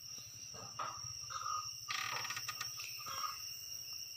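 Faint background chirring of insects, a steady high-pitched tone, with a few short faint calls over a low hum.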